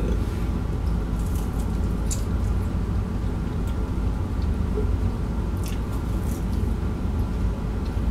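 A person chewing fried food with the mouth closed, with a few faint crisp mouth sounds, over a steady low hum.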